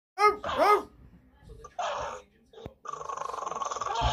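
A dog vocalizing: two short pitched calls near the start, a brief rough burst about two seconds in, then a growl that grows louder over the last second.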